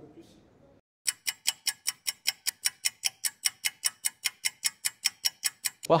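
Fast, even ticking sound effect, about five ticks a second, starting about a second in after faint room tone and a brief silent gap, and stopping as speech begins.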